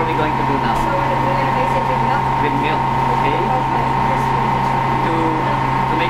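Steady mechanical drone of commercial kitchen ventilation: a constant low hum with a steady higher tone over it, and faint voices underneath.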